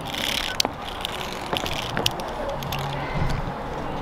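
Metal clicks and rattles from a zip line trolley's pulleys and clips being handled on the steel cable: a few sharp clicks over a steady rustling noise.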